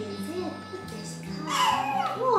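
A baby of about four months gives a loud, high-pitched squeal near the end, over steady background music.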